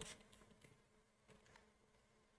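Near silence: room tone with a faint steady hum and a few faint computer keyboard clicks as a name is typed in.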